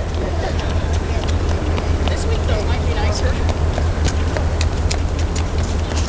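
Footsteps of a crowd of race walkers on pavement as irregular light clicks, with their scattered talk, over a steady low rumble.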